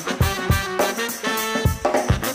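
Upbeat swing-style music with brass horns over a steady drum beat.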